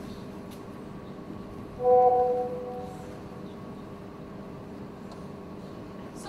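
A single held musical note begins suddenly about two seconds in and fades away within about a second, over a faint steady hum.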